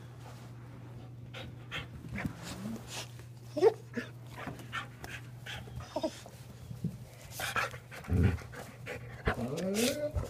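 Dogs playing: panting and scuffling, with a few short rising whines, over a steady low hum.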